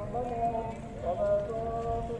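A voice singing or chanting a slow melody in long held notes that glide from one pitch to the next.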